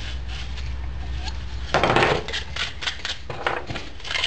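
Sandpaper rubbed by hand around the cut end of a 3/4-inch schedule 40 PVC pipe to knock off the burrs: a rasping rub about two seconds in, followed by a run of short scratchy strokes. A steady low hum sits underneath.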